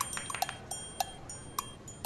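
A series of light, sharp ticks or clinks, irregularly spaced at about three or four a second.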